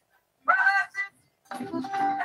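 A man singing lead with a live band, carried over a video-call connection that cuts to dead silence between phrases. A short note slides upward about half a second in, and the singing with the band picks up again about a second and a half in.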